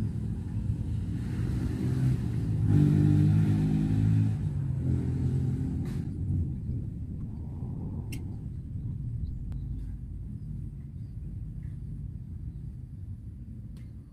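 An engine running nearby, growing louder over the first few seconds and then fading away, as if passing by.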